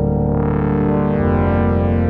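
Synthesizer music: slow, sustained chords over a deep bass. The upper tones brighten from about a third of a second in, and the bass note changes about a second in.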